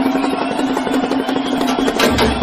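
DJ dance remix music played loud over a sound system, in a break where the heavy bass drops out, leaving a steady held tone under a fast ticking beat.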